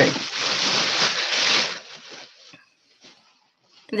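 A thin plastic bag rustling and crinkling as it is handled and folded around an item, loud for about two seconds, then fading to a few faint rustles.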